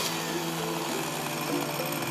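Chainsaw running steadily as it carves into a wooden block, a continuous engine tone with cutting noise.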